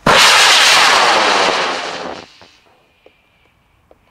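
High-power rocket motor igniting and burning with a loud rushing hiss as the rocket lifts off the pad and climbs. The sound starts abruptly, fades slightly as the rocket climbs, and cuts off a little over two seconds in at motor burnout.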